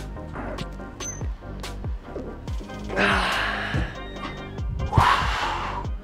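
Background music with a steady beat. Over it come two loud, breathy exhalations of effort, about three seconds in and again about five seconds in, the first with a voiced grunt, at the end of a heavy set of barbell curls.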